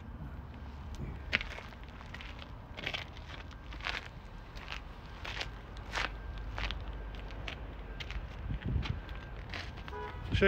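Footsteps on gravel, an irregular step about every half second to a second, over a steady low background rumble.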